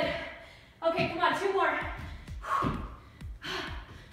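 A woman's short breathy vocal sounds of effort during burpees, with a few soft thuds of hands and feet landing on a floor mat.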